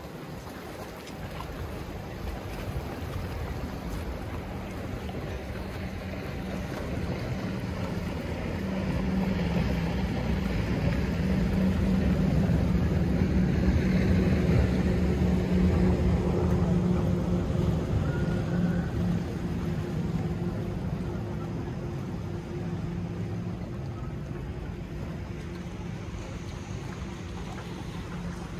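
Boat engine droning as it passes, growing louder to a peak about halfway through and then fading, over wind and waves.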